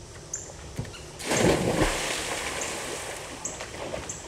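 A person jumping off a diving board into a swimming pool: a couple of light knocks from the board, then a big splash a little over a second in, with the water washing and settling after it.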